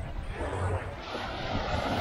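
Small wave breaking and washing up the sand at the water's edge: a rush of surf that swells over about two seconds.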